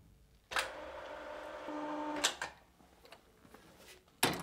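The front rigging link of a d&b XSL loudspeaker cabinet sliding out in its metal rigging strand for about two seconds, then clicking twice as it seats and locks, connecting the two parts of the array.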